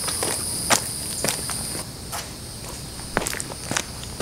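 Footsteps of canvas sneakers on a paved driveway, a scattering of irregular scuffs and taps. Insects keep up a steady high drone that stops a little under halfway through.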